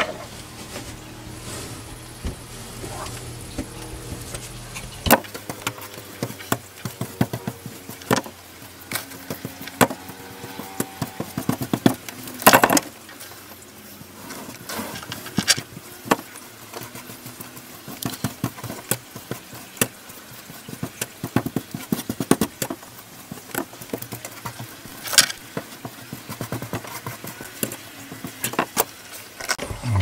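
Irregular clicks, taps and rustles of hands handling and pressing fibreglass mat strips into wet resin, with a steady low hum in the first five seconds that cuts off suddenly.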